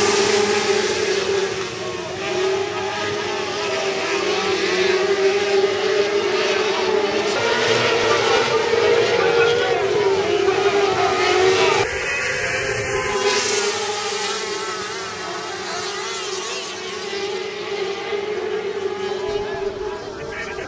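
Several Formula 500 winged sprint cars' engines running hard together around a dirt speedway as a steady high engine drone. About twelve seconds in the sound changes abruptly and carries on a little quieter.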